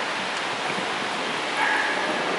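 Steady, even hiss of background noise, with a short faint pitched cry near the end.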